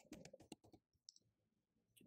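Faint computer keyboard keystrokes, a quick run of soft clicks in the first second as a password is typed.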